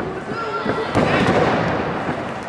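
A single sharp thud about a second in as a wrestler's body strikes the ring, amid loud crowd shouting in the arena.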